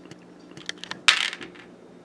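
A quick run of sharp light clicks, building to a short clatter of small hard objects about a second in, like a coin dropping and settling.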